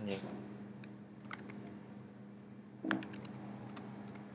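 Computer keyboard typing: short runs of key clicks about a second in and again near the end, as a shell command is typed.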